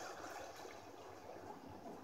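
Faint steady hiss with no distinct events.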